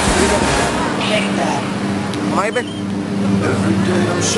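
Outdoor crowd chatter and hubbub as the dance music's bass drops out about a second in, with one short rising whoop about halfway through.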